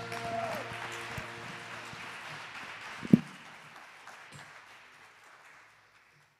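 Congregation applauding as the last held note of a worship song dies away just after the start, the clapping fading out over several seconds. A single loud, low thump comes about three seconds in.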